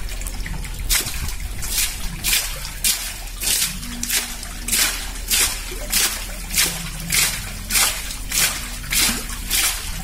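Muddy water spurting and splashing out of the top of a borewell drilling pipe, in regular splashes about one and a half a second, starting about a second in. The pipe is being stroked up and down by hand with a bamboo lever, a palm over its mouth acting as a valve, as the bore for a hand pump is sunk.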